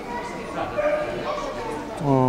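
A dog giving about three short, high-pitched whines over the chatter of people in the hall.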